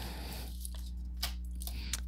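Steady low hum with a few faint, soft flicks and rustles of tarot cards being handled and laid on a table.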